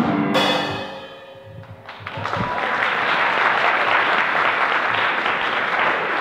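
Closing hits on a drum kit, with a cymbal crash that rings out and fades over about a second, ending a piano-and-drums piece. From about two seconds in, an audience applauds steadily.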